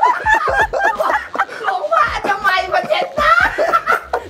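Several people laughing heartily together, mixed with snatches of laughing talk.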